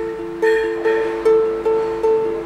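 Ukulele strumming a held G chord: four evenly spaced strums, about one every 0.4 seconds, each note ringing on.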